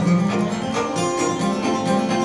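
Fiddle and acoustic guitar playing live together: a bowed fiddle melody over steady strummed guitar chords.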